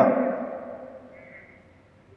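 A man's amplified voice ringing out in a reverberant room after a phrase ends, fading away over about a second and a half to near quiet.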